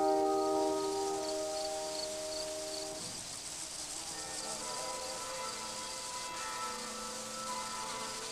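Gentle film-score music: held chords fade away over the first three seconds, then softer sustained notes carry on. A faint, high, evenly pulsing chirp runs underneath.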